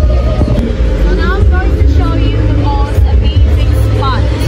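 Busy amusement-park ambience: a heavy steady low rumble under background music and scattered voices, with a few short high rising and falling voice sounds about a second to three seconds in.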